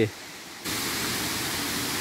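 Steady rushing of a small stream's water running over rocks, starting suddenly about two-thirds of a second in.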